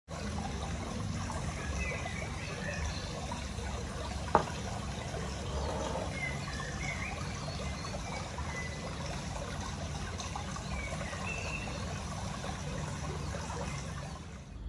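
Steady trickling water with a few faint short chirps, and a single sharp click about four seconds in.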